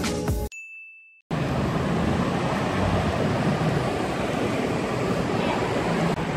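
Background music stops about half a second in, and a single short high-pitched electronic beep follows. After it comes a steady rumble of city street traffic.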